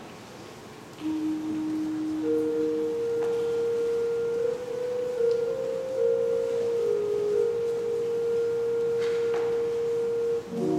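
Church organ on a soft, flute-like stop, playing a few long held notes in a slow line. It starts about a second in with one lower note, then holds a higher note while nearby notes come and go around it.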